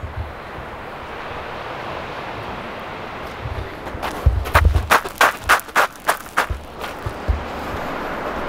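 Steady rush of ocean surf, then from about four seconds in a run of about eight footsteps on a dirt trail, roughly two to three a second.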